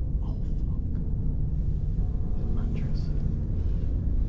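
Steady low rumble with faint whispered voices now and then.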